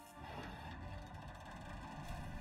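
Quiet cartoon soundtrack: a steady low rumble under faint music.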